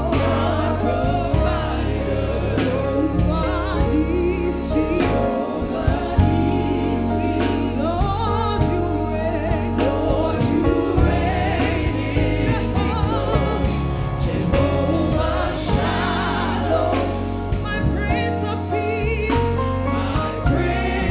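Live gospel praise-and-worship song: several singers on microphones singing together over a band of drums, electric guitar and keyboard.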